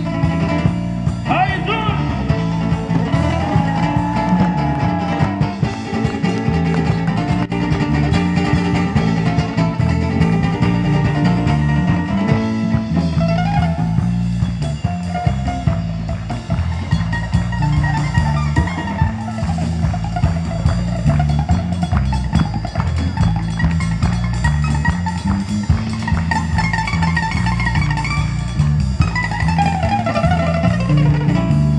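Live band in an instrumental passage: a plucked-string lead solos with bent and sliding notes over electric bass and drum kit.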